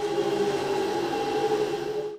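Wheel-balancing machine spinning a mounted car wheel: a steady motor hum with several held tones.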